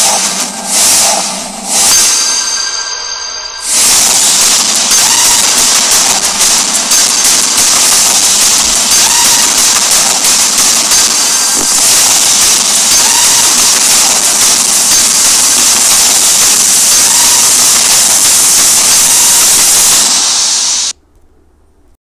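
The promo's soundtrack: three short whooshes in the first four seconds, then a loud, steady hiss-like wash with faint music beneath it. It cuts off suddenly about a second before the end.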